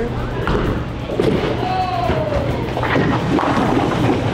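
Music over the din of a bowling alley, with scattered thuds and knocks of balls and pins from the lanes.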